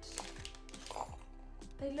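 Soft background music with steady held notes, over faint plastic-bag rustling and small metal clinks as a set of gold rings is tipped out onto a desk.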